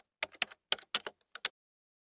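Keyboard typing sound effect: a quick run of about ten sharp key clicks that stops after about a second and a half.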